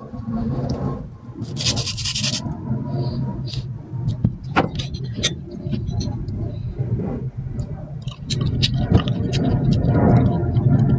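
Kitchen knife scraping and slicing through mango, with a noisy scrape about two seconds in and scattered light clicks against a plate, over a steady low rumble.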